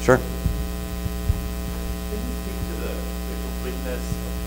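Steady electrical mains hum with a stack of even overtones, holding level throughout.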